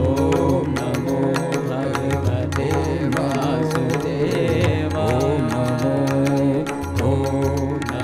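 A male Hindustani classical vocalist sings a Krishna devotional bhajan in a gliding, ornamented line. Under him run a steady drone and regular percussion strokes.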